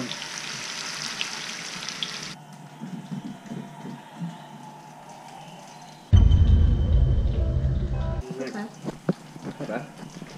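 Pieces of fish sizzling as they fry in a pan, nearly done; the sizzle cuts off abruptly about two and a half seconds in. About six seconds in a loud low rumble lasts about two seconds, followed by a few faint clicks.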